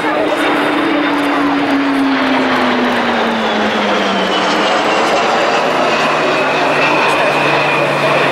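RAF Boeing E-3D Sentry AWACS jet, with four turbofan engines, passing low overhead: a loud, steady jet roar. Both a low drone and a higher whine fall steadily in pitch as it goes past and away.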